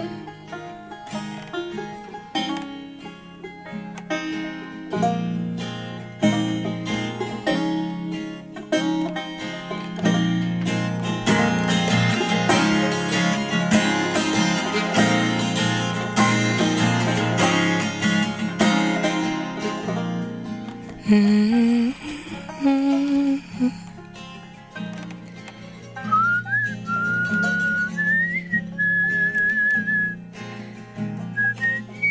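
Acoustic folk instrumental passage: guitar, banjo and mandolin playing together in a busy rhythm of plucked notes. Near the end a whistled melody line comes in over the strings.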